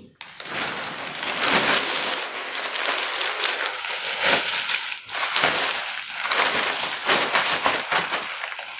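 Large black plastic garbage bag rustling and crinkling as it is pulled down over a person and gripped, a continuous crackling rustle with a brief lull about five seconds in.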